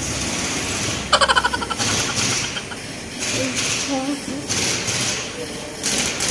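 Pneumatic impact wrench rattling in one short burst of rapid hammering strokes about a second in, over a steady background hiss.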